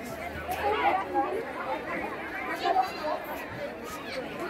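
Several people talking at once, voices chattering and overlapping.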